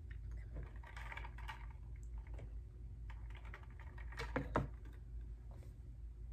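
Close-up chewing of fried fast food with the mouth closed: a run of small, irregular crunching and clicking sounds, with louder crackles a little past four seconds in.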